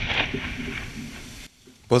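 Rolling rumble of a demolition blast destroying unexploded 122 mm high-explosive fragmentation shells, fading steadily and then cut off abruptly about one and a half seconds in.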